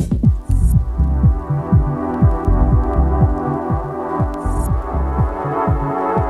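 Minimal techno in a breakdown: the hi-hats drop out at the start, leaving a sustained synth chord over a deep kick drum pulsing about twice a second. Two short rising hiss swells come about half a second and four and a half seconds in.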